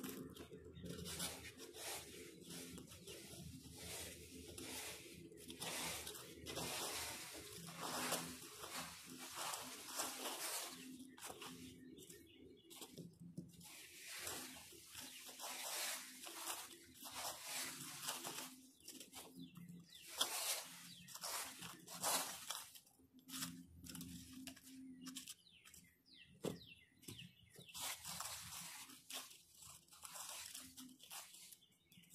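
Plastic fan rake scraping and rustling through dry dead leaves and soil in a flower bed, in many short, irregular strokes.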